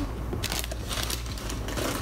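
Paper and packaging rustling and crinkling as a kraft paper gift bag and its contents are handled, in a few short bursts, the loudest about half a second to a second in.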